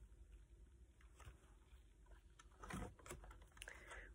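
Near silence, with a few faint taps and a soft rustle of a picture book's page being turned, mostly in the second half.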